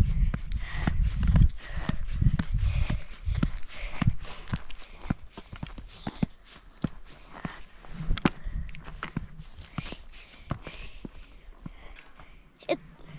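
Footsteps climbing concrete stairs, hard clacking footfalls about two a second, after a low rumble in the first second or so.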